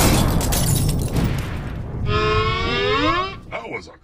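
Explosion sound effect, a loud crashing blast already under way that dies away over about two seconds. It is followed by a long pitched sound that rises and bends, and brief speech near the end.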